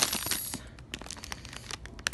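Crinkly plastic snack-chip bag rustling as it is handled: a dense crackle for about the first half second, then scattered crackles.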